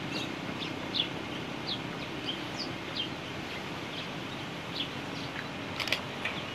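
Birds chirping: short high chirps, several a second at times, some sliding in pitch, over a steady low outdoor background noise.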